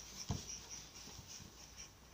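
Faint scratching and rustling of a baby's hands and sleeves moving on a wooden floor and against soft fabric toys, with a soft low thump shortly after the start.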